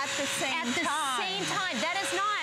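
A woman talking over the steady whine of a running Bissell CrossWave wet/dry vacuum.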